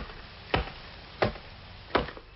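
A small hatchet chopping twigs on a wooden stump: three sharp strikes about two-thirds of a second apart.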